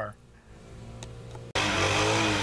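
Quiet for the first second and a half, then a lawn mower engine's steady running cuts in suddenly and loud, an even drone with a hiss over it.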